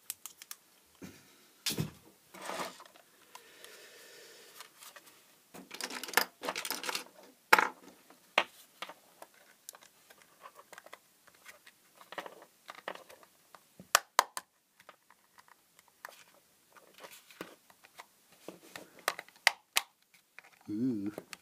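Small plastic LED driver case being handled and pried at its clip-together seam with a screwdriver: irregular plastic clicks, taps and scrapes, with a few sharper clicks.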